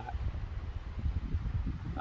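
Wind buffeting the microphone, an uneven low rumble that comes and goes in gusts.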